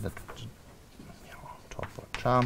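Chalk on a blackboard while a diagram is drawn: a few short sharp taps and strokes at the start and again near the end, over faint room hiss.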